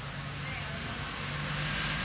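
Engine of an old classic stake-bed truck running at low speed as it rolls up and passes close by, growing louder.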